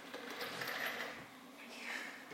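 Pen scratching across paper in two short spells of writing, the second near the end, over a faint steady room hum.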